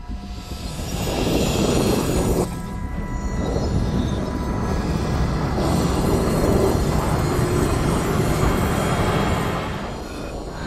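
Film soundtrack: a loud, steady rumble of sound effects under dramatic music, breaking off suddenly about two and a half seconds in and then building again.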